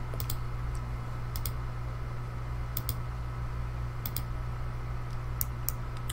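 Computer mouse and keyboard clicks: short sharp clicks, mostly in close pairs, coming every second or so, over a steady low hum.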